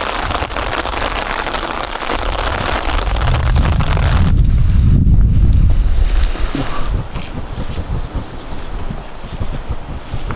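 Wind blowing across the microphone: a steady rushing hiss, with heavy low buffeting from a strong gust in the middle.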